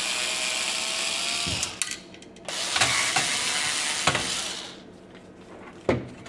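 Bosch IXO cordless screwdriver running in two bursts of about two seconds each with a steady motor whine, backing out the screws that hold the fan in a computer power supply's case. A few small clicks come between the two runs.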